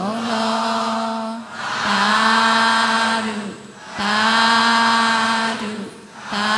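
Burmese Buddhist metta and merit-sharing verses chanted in long held notes, three phrases with short breaks between them.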